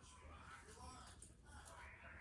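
Near silence: room tone with a few faint, brief ticks, as from the small topiary arrangement being handled on a wooden nightstand.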